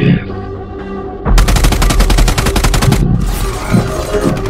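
Rapid-fire gunfire sound effect: a burst of quick, evenly spaced shots lasting about a second and a half, starting just over a second in, followed by a weaker, shorter spray of shots.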